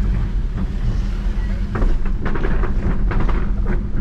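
Car engine and road rumble heard from inside the cabin as it rolls along slowly, with a run of short knocks and rattles in the second half.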